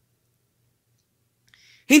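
Near silence during a pause in speech, with a faint low hum. Near the end comes a brief soft noise, then a man starts speaking.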